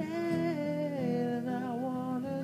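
A person humming a wordless melody in long held, sliding notes, with acoustic guitar accompaniment.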